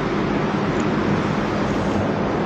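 Steady rushing background noise with a low hum underneath, with no speech.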